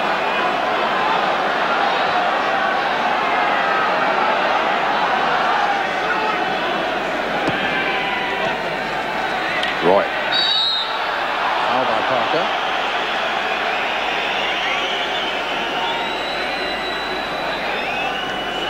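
Large stadium crowd keeping up a steady din of voices and chanting. A short high referee's whistle blast comes about ten seconds in, for a foul.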